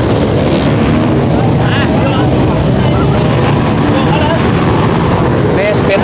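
Steady engine drone with voices talking.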